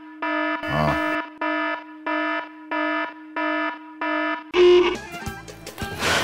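An electronic buzzer beeping: about seven short beeps of one steady tone, roughly one and a half a second, stopping after about four and a half seconds.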